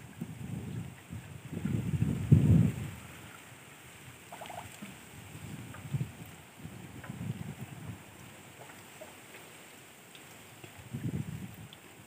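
Clear liquid pouring from a metal can into a power tiller's filler neck, with irregular low gurgling swells, the strongest about two seconds in.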